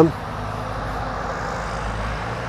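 Steady low rumble and hiss of distant road traffic, with no other distinct event.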